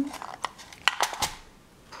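Metal teaspoons clinking against each other as a hand picks through a box of them: about four sharp clinks in the first second and a half, then quiet.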